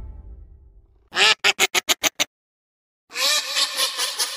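Duck quacking as a logo sound effect: a fast string of about seven short quacks, then after a pause of about a second a longer, more continuous run of quacking. The tail of a music sting fades out first.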